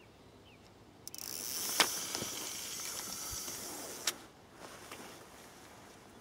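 Baitrunner-style fishing reel's freespool clicker ratcheting fast as a barbel takes line off the spool: a steady high buzz of about three seconds, starting about a second in, with a sharp click near its start and another as it stops.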